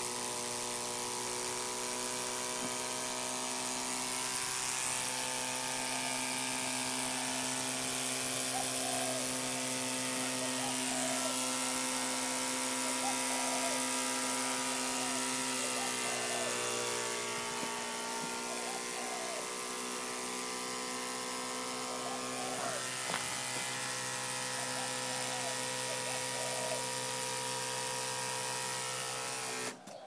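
Small DC electric feed-water pump motor running with a steady hum, dipping slightly in pitch about halfway through, then cutting off abruptly at the very end as the boiler's water-level probe switch shuts the pump off once the boiler is full.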